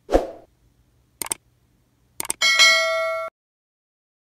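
An edited sound effect: a short low thump, a pair of quick clicks about a second in, then more clicks and a bright ding-like chime with several steady tones. The chime rings for under a second and cuts off abruptly.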